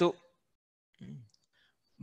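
A man's voice in a pause between drilled words: a word trails off at the start, a short quiet vocal sound comes about a second in, and the rest is near silence.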